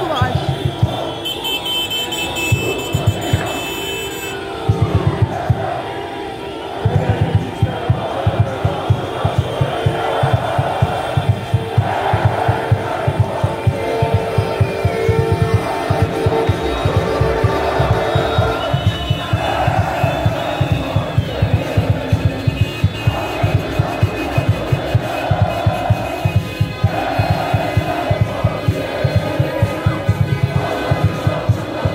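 Loud music with a fast, steady beat playing over a shouting, chanting street crowd of football fans celebrating a championship. A long steady horn tone is held through much of the first half.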